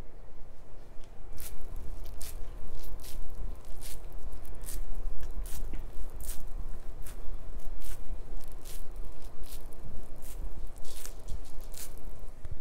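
Wet cloth wiping and dabbing over the camera and microphone, making squishy rubbing strokes about twice a second with a low handling rumble underneath, as cleanser is wiped off with spa water.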